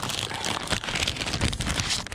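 Silvery plastic packaging bag crinkling as it is handled close to the microphone, making a loud, dense crackle of many small irregular clicks.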